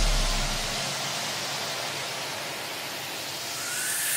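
Electronic dance track in a breakdown: the bass fades out in the first second, leaving a steady white-noise wash that swells again toward the end with a faint rising tone.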